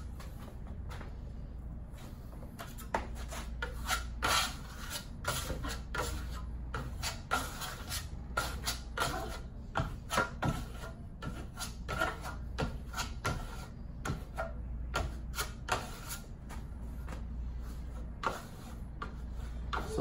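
Metal plastering trowel scraping and rubbing wet black Venetian plaster (marmorino) across a sample board in quick, irregular strokes: a second wet-on-wet pass over the first coat. A steady low hum runs underneath.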